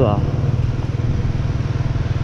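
Motorbike engine running steadily at cruising speed, a low even drone, with wind and road rush on the microphone.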